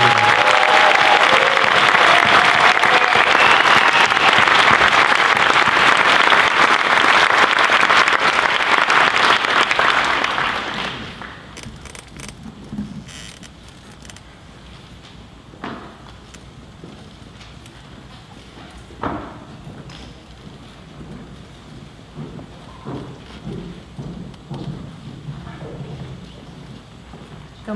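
Audience applauding loudly for about eleven seconds, then dying away. It gives way to a quiet hall with a few scattered knocks.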